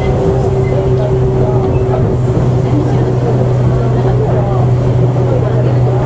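Running noise heard inside a Tobu 8000 series motor car (MoHa 8850) travelling at steady speed: a constant low drone with rumble under it, unchanging throughout.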